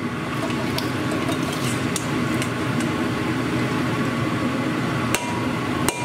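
Raw pork belly cubes frying in about an inch of hot oil in a cast-iron pot, a steady sizzle over the running range hood fan. Near the end the metal bowl they are tipped from knocks twice against the pot.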